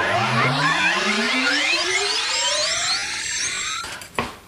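An electronic rising whine that climbs steadily in pitch for nearly four seconds and cuts off abruptly.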